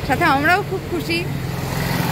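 Street traffic: a motor vehicle's engine running close by, a steady low rumble that grows stronger in the second half.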